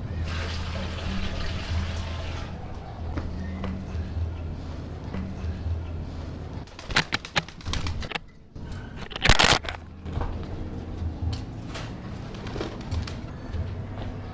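Water splashing and pouring as a tray is rinsed in a bucket, clearest in the first couple of seconds, over a steady low hum. A few sharp knocks about seven and nine seconds in.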